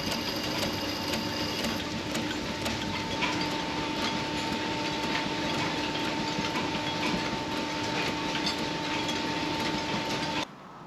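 Belt-driven workshop line shafting and grindstone running: a steady mechanical hum with a light, regular ticking. For about the first two seconds a slot drill's cutting edge is held against the turning stone.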